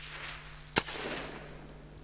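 A single sharp shot from an air rifle on the shooting range, about three-quarters of a second in, trailing off in a short noisy tail.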